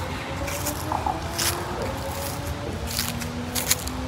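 Footsteps rustling through dry fallen leaves, a loose run of short crunches, under faint sustained background music tones.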